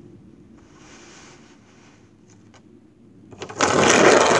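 Soft sliding on a tabletop with a couple of light taps, then about three and a half seconds in a loud clattering rattle of a handful of crystals being moved about on the table.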